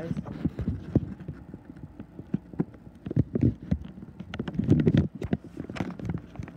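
Footsteps walking across a floor, a series of irregular low thuds and clicks, mixed with the rubbing and knocking of a handheld phone.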